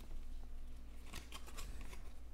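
Stack of baseball trading cards being flipped through by hand, the cards sliding against one another in a few brief rasps, loudest in the second half.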